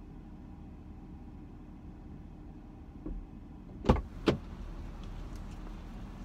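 A car's front door being opened from outside: two sharp clunks close together about two-thirds of the way through as the door is unlatched and swung open, over a steady low rumble.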